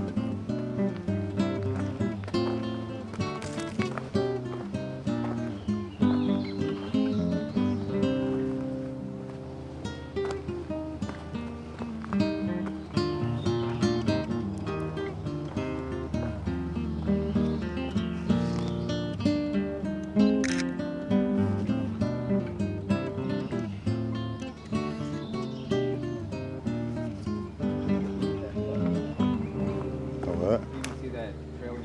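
Background music: acoustic guitar playing a run of plucked notes.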